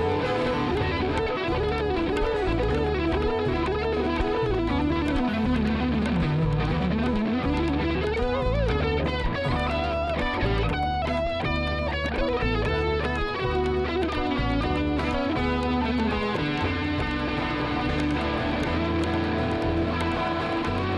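Indian–jazz fusion band playing live: an electric-guitar lead over bass, acoustic guitar and hand drums (tabla and mridangam). A wavering melody line gives way to fast runs of notes about halfway through.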